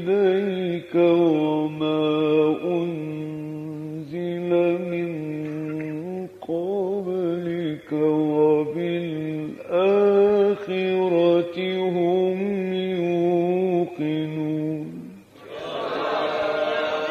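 A man reciting the Quran in the melodic mujawwad style, holding long, wavering, ornamented notes in phrases broken by short breaths. As the last long phrase ends near the close, the listening crowd breaks into a burst of exclamations.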